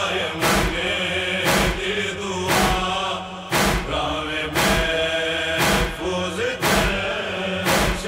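A noha, a Shia lament, chanted in a slow refrain over a sharp beat that falls about once a second.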